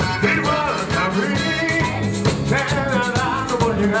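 Live dance-band music: a woman singing with a wavering vibrato over electronic keyboard and drums with a steady beat.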